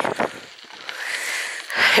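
Bicycle rolling along a bumpy gravel track: a steady hiss of tyre and wind noise that grows a little louder toward the end.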